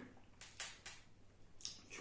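Faint mouth sounds of a person chewing white chocolate with almond pieces: three short crackly clicks about half a second in, then a brief breathy sound near the end.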